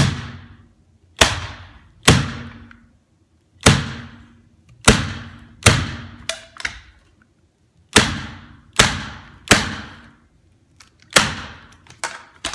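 Electric staple tacker firing about ten sharp shots at irregular intervals, each with a short ringing decay, as staples are driven between the carpet fibres to fasten the folded-under carpet edge at the transition to the hardwood floor.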